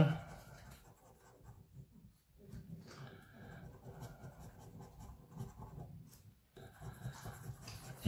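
A coin scratching the latex coating off a lottery scratchcard: faint, repeated rasping strokes with a couple of brief pauses, as squares on the grid are uncovered.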